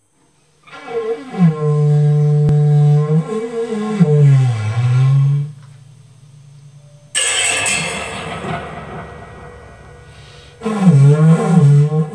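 Free-improvised industrial jazz. A low, droning pitched tone bends up and down and drops away. About seven seconds in, a sudden noisy crash slowly fades, and near the end the low bending tone comes back.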